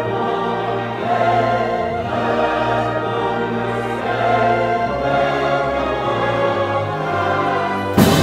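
A large choir singing with a full orchestra: held chords that change every second or so, ending in a sudden loud accent.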